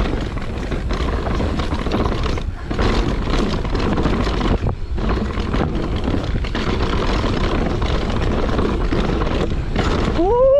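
Propain Tyee CF full-suspension mountain bike ridden fast down a rooty dirt singletrack: knobby tyres rolling over dirt and roots, with a constant clatter of knocks from the bike over the bumps and a heavy rumble of wind on the camera microphone.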